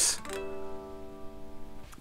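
A 12th-fret natural harmonic on the G string of a Dean Nashvegas electric guitar: one clear note an octave above the open string. It rings steadily for over a second and is then cut off suddenly.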